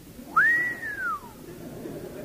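A single human whistle, one clear note that rises quickly and then slides slowly down, about a second long.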